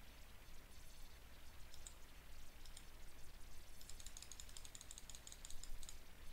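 Faint clicking of a computer mouse: a few single clicks, then a rapid run of clicks lasting about two seconds near the end.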